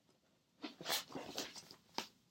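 Paper rustling and crinkling as a manila envelope stuffed with paper charts is picked up and handled, starting about half a second in, with a sharp click near the end.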